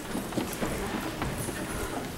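Footsteps and light knocks on a theatre stage as people move about in the dark, a scattered run of short hard taps.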